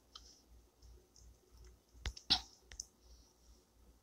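Quiet room tone broken by a short cluster of three soft clicks a little past the middle.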